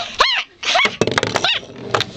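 Several short, high-pitched vocal squeals, each arching up and then down in pitch.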